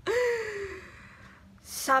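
A woman's loud, breathy voiced sigh that falls steadily in pitch over about a second and trails off.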